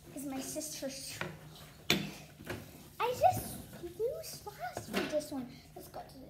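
A child's voice speaking or vocalising in short bursts, with a sharp knock about two seconds in.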